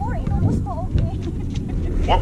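Faint voices of basketball players calling out at a distance, over a steady low rumble.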